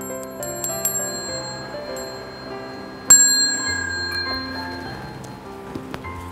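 Soft instrumental background music, a slow run of pitched notes. About halfway through, a small bell-like chime is struck once and rings on for a couple of seconds; fainter chime strikes come in the first second.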